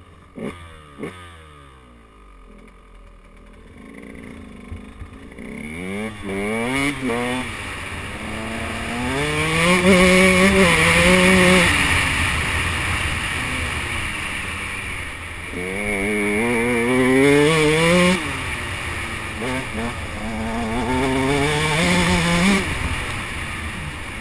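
2008 KTM 125 EXC two-stroke single-cylinder dirt bike engine under way, heard from the rider's helmet: low and quiet at first, then revving up and dropping back about four times as the bike accelerates across the field, with wind rushing over the microphone.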